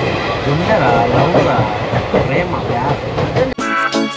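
Running noise of a passenger train heard from inside a sleeper coach, a steady noisy rumble with passengers' voices mixed in. About three and a half seconds in it cuts abruptly to music.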